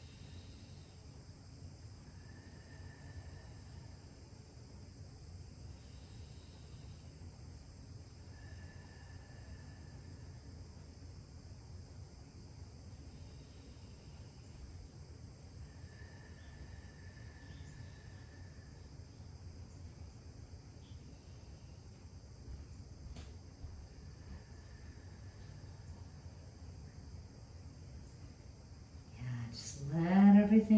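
Quiet room tone: a low steady hum and hiss. A faint high thin tone comes and goes four times, each lasting a couple of seconds, and there is one faint click near the end.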